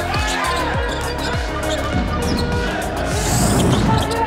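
Background music over basketball game sound, with a ball dribbled on a hardwood court in repeated low thuds. A short high swish comes near the end.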